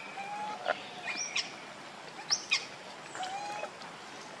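Birds calling: a short whistled note that dips at its end, heard near the start and again about three seconds in, with quick, sharp rising chirps between.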